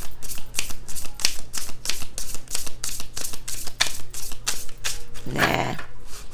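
A deck of tarot cards being shuffled by hand, with quick even strokes of the cards at about four a second. A short vocal sound, like a hum, comes near the end.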